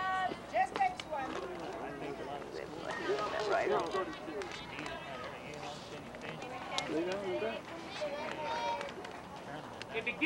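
Indistinct voices of several people talking and calling out in the background, none of it clear enough to make out, with a few short clicks.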